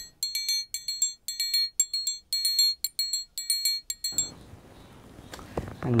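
Electronic beeping: rapid high-pitched beeps in quick clusters, about two clusters a second, stopping abruptly about four seconds in.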